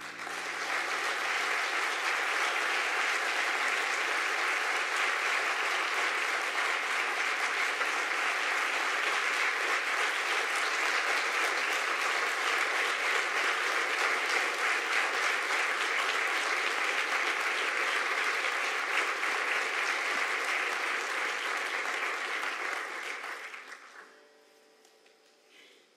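Audience applauding steadily for over twenty seconds, fading away near the end. A low keyboard note dies away at the very start.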